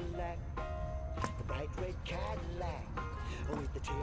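Background music, with a brief scratch of a coin on a scratch-off lottery ticket.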